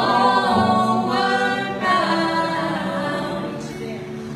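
A woman singing live with other voices joining in harmony, over acoustic guitar; one sung phrase starts at the outset and a new one comes in about two seconds later.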